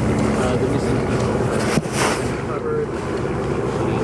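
Steady low engine hum under wind noise on the microphones, with faint voices. A sharp knock comes a little under two seconds in, followed by a brief rush of wind.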